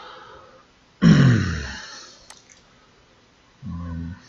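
A man's short breathy sigh-like vocal sound, falling in pitch and fading, about a second in; a single computer mouse click a little past halfway, starting the video player; and a brief hummed 'um' near the end.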